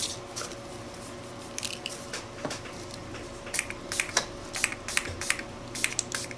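Small finger-pump bottle of acrylic spray paint squirting in short spritzes: a couple early on, then two or three a second from about halfway through.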